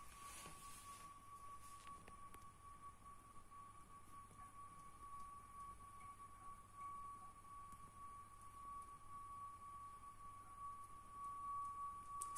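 Faint, steady high-pitched hum, a single ringing tone, from a toilet's water-supply plumbing as water flows through it, growing slightly stronger near the end. It is a resonance of the pipework; where the metal pipe touches the plastic is the owner's guess at its cause.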